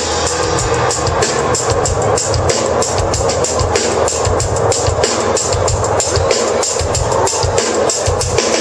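Live funk band playing with busy, driving drum kit and percussion over bass, electric guitar and organ.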